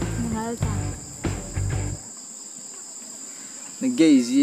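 Steady high-pitched insect drone, like a chorus of crickets or cicadas, with background music of low bass notes that stops about halfway through.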